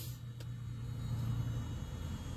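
Low, steady hum of a vehicle's idling engine heard inside the cabin, with one faint click about half a second in.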